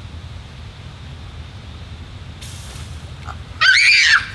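A short hiss as the pressurised elephant-toothpaste foam bursts out past a hand-held bottle cap, about two and a half seconds in, then a child's high-pitched scream near the end.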